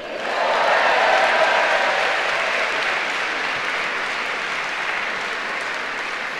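Audience applauding a graduate across the stage: the clapping swells quickly at the start and then slowly tapers off.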